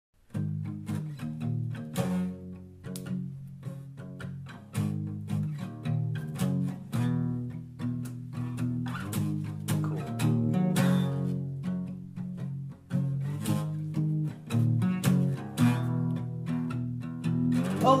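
Solo guitar playing a song's intro: chords and notes struck one after another and left to ring and fade, starting about half a second in. A singing voice comes in right at the end.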